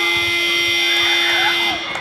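A sports-hall buzzer sounds one long, steady, loud buzz lasting about two seconds, then cuts off shortly before the end.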